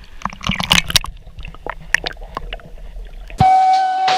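Swimming-pool water splashing and sloshing around a person moving chest-deep in it, a cluster of splashes in the first second and scattered ones after. Loud music cuts in suddenly near the end.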